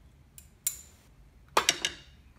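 A metal spoon clinking against ceramic bowls as minced garlic is scraped from a small bowl into a larger one. There is one ringing clink about two-thirds of a second in, then a quick run of clinks near the end.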